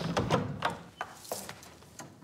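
A wooden door opening and someone walking in: a string of short, light clicks and knocks spread over a couple of seconds.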